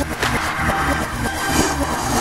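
Electronic trance music breakdown: the kick drum drops out and a rushing white-noise sweep swells in its place, like a whoosh.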